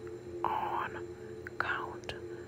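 A voice whispering the repeated switchwords 'rush, on, count, now, done': two whispered words, about half a second in and near the end. Underneath runs a steady low two-note drone.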